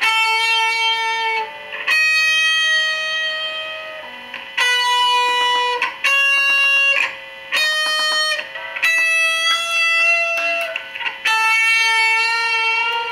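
1971–72 Gibson SG Pro electric guitar with P90 pickups, played through a small 10-watt amp. Single notes are picked and held for a second or two each, about seven in turn, some wavering in pitch from the Bigsby vibrato arm, whose use the player says throws this guitar out of tune.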